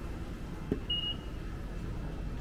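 A single short, high beep from an automatic ticket gate's IC-card reader as a fare card is tapped, just after a soft click.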